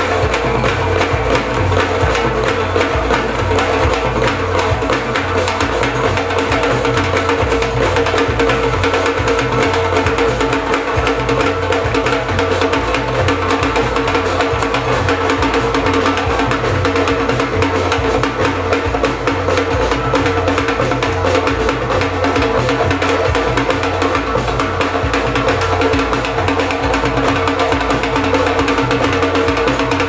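Live samba-fusion band playing a steady, loud groove: drum kit and percussion drums over a repeating bass line.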